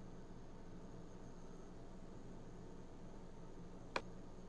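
Faint steady room tone: microphone hiss with a low hum. One short click just before the end.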